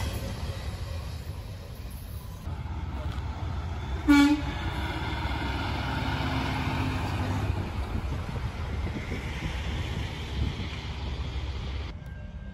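A semi-truck's diesel engine rumbles as the rig turns slowly through an intersection. About four seconds in, a single short horn toot sounds, the loudest thing heard. The rumble of a passing freight train fades in the first couple of seconds.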